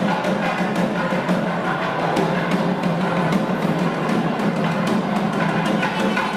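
Festival percussion music: rapid, uneven drum strikes over a steady low hum.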